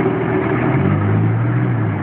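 Mercedes-Benz G-Class Wolf's engine running under way, heard from inside the cabin over rumbling road noise, its note climbing slightly about a second in.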